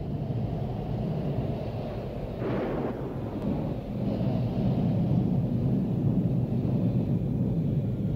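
Thunderstorm ambience: a continuous low rumble of thunder that slowly swells in loudness, with a brief hiss about two and a half seconds in.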